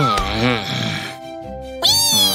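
Cartoon soundtrack: background music with a wobbly, falling whistle-like sound effect that dies away just after the start. Short wordless vocal sounds follow, with a second falling whistle-like effect starting near the end.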